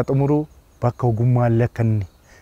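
A man's voice speaking steadily in short phrases, with brief gaps between them.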